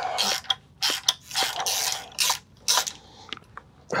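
Ratchet wrench clicking in short, irregular strokes as it backs out salt-corroded bolts on a Honda outboard's lower unit. A few light clicks follow near the end.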